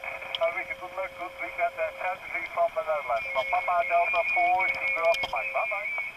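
A ham station's voice received over single-sideband on the 10-metre band, coming from the Elecraft KX3 transceiver's speaker: thin, narrow-sounding speech with a steady whistle under it that stops near the end.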